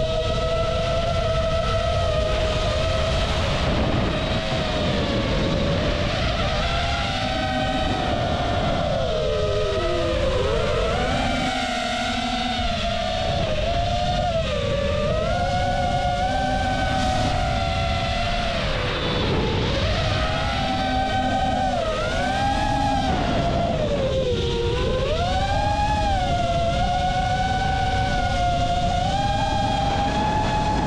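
A drone's electric motors and propellers whine, rising and falling in pitch as the throttle changes, over a steady low rumble of air on the drone's own microphone.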